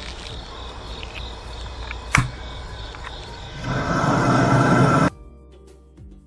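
Grill Gun propane torch hissing while it lights the smoker's charcoal, with a sharp click about two seconds in and a louder blast of flame for over a second that stops abruptly near the end.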